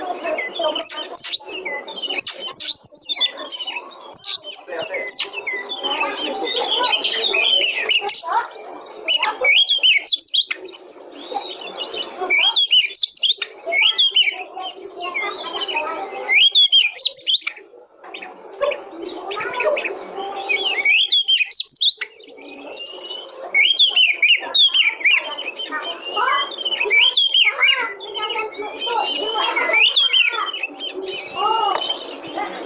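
Oriental magpie-robin (kacer) singing: a fast, varied run of whistles and chattering notes, phrase after phrase, broken by short pauses of about a second.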